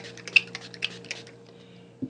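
Hand trigger spray bottle of vinyl application fluid spritzing onto a metal sign: a quick run of short, clicky spritzes in the first second or so, then it stops.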